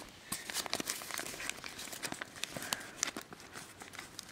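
Folded origami paper units rustling and crinkling as they are handled and tucked into one another, a scattering of short, crisp clicks of paper throughout.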